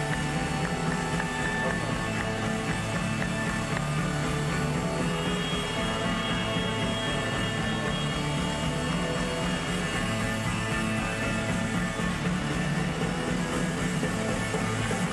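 Live rock band playing: electric guitars, bass and drums in a steady full mix, with a held high note in the middle.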